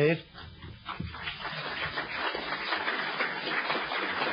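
Audience applauding, starting about a second in and building to a steady clatter of many hands clapping.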